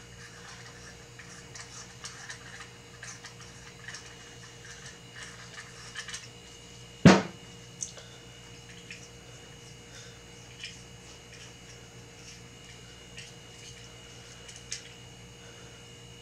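Light clicks and small metal taps of threaded telescope-camera spacers being unscrewed and handled, with one sharp knock about seven seconds in as a part is set down on the table. A steady faint hum runs underneath.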